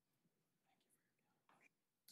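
Near silence: room tone with a few faint, brief murmurs of low voices, the clearest about one and a half seconds in.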